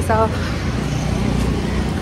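Steady road traffic noise, an even low rumble, after a single spoken word at the start.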